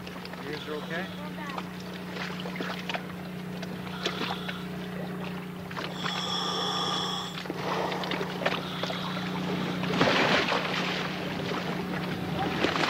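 A boat engine idling with a steady low hum, with scattered clatter around it. A high pitched tone sounds for about a second just after midway, and a loud burst of hiss comes about two seconds before the end.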